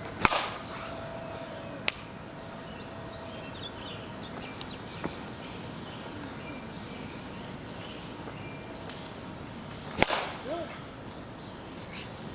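A bat striking a pitched ball twice: a sharp crack just after the start and another about ten seconds in, each with a short ring. A smaller click comes near two seconds.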